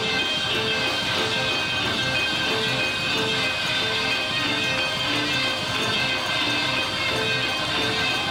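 Live church band playing loudly: trombones and trumpets playing repeated short riffs over a drum kit.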